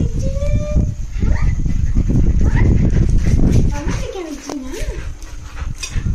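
Two pet dogs whining and yelping in excitement at feeding time, with wavering, rising cries near the start and again about four seconds in, over loud scuffling and thumping as they jump about.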